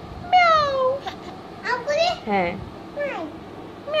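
People imitating a cat's meow: a long falling "meow" about a third of a second in, then shorter meow-like calls, and another falling "meow" right at the end.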